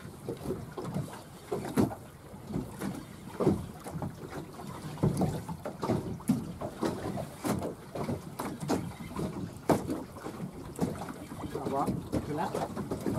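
Choppy water slapping irregularly against a small boat's hull, with wind buffeting the microphone.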